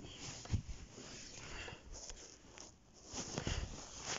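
Handling noise: soft rustles and a few dull knocks as a phone is moved about against plush toys and hands.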